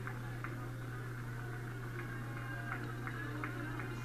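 Steady low hum under faint background ambience, with a few soft clicks.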